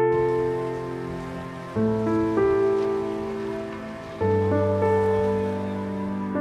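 Slow, soft background music: sustained keyboard chords, a new chord struck about every two and a half seconds and fading away, over a faint even hiss like rain.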